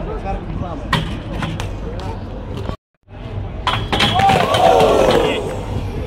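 Crowd chatter with a single click, then after a brief break a BMX bike clattering onto concrete steps as the rider bails, several sharp impacts under loud crowd shouts.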